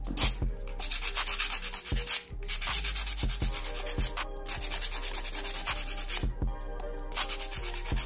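Handheld nail file rasping over acrylic nails in rapid back-and-forth strokes, in runs broken by short pauses about every two seconds.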